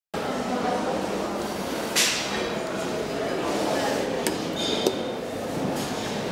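Background noise of a large indoor hall with indistinct voices, a short hiss about two seconds in, and a few sharp clicks with a brief high ping near the end.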